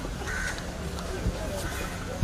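A short bird call about half a second in, with a fainter one near the end, over a low murmur of voices.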